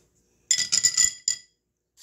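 A handful of small plastic counting bears dropped into a tall drinking glass, clattering against one another and the glass. The glass rings for about a second, starting about half a second in.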